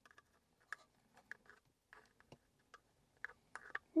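Faint, irregular light clicks and short scrapes of a small screwdriver tip working against a car map lamp's plastic lamp holder, feeling for the barb that releases it.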